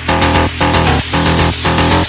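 Electronic background music with a steady beat, about two beats a second.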